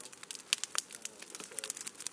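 Wood fire in a metal cone kiln, burning pruning wood for charcoal, crackling and popping in fast, irregular snaps.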